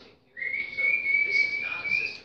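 A single long whistle held at one steady high pitch, rising slightly at the end.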